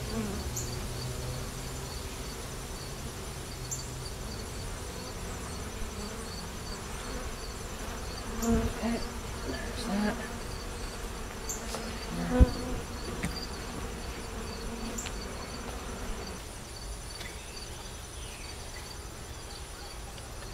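Honeybees buzzing steadily around an open hive, a little more stirred up than usual. A few knocks come from the hive-top feeder being handled on the hive box, the loudest a little past halfway.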